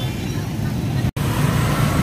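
Dense motorbike and scooter traffic on a city street: a steady low rumble of many small engines, broken by a split-second gap a little past the middle.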